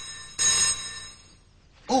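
Telephone-style bell ringing in short bursts, signalling an incoming call on a picture phone. One ring fades out at the start and a second begins about half a second in, dying away by about a second and a half.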